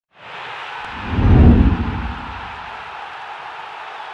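Channel intro sting: a steady rush of noise with a deep boom that swells about a second in and peaks around a second and a half.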